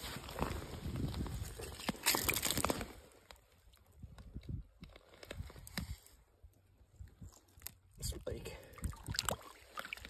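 Water sloshing and splashing in an ice-fishing hole as a big trout is landed through it. There is a louder burst about two seconds in, then quieter scattered handling knocks.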